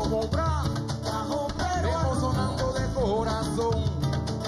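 Afro-Peruvian music: men singing over cajón and conga drumming.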